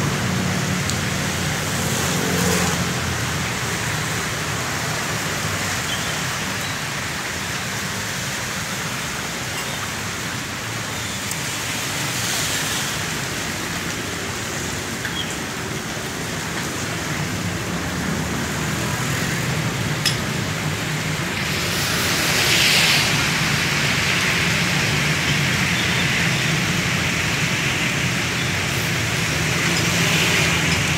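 Steady engine hum under a broad hiss, swelling briefly about 22 seconds in.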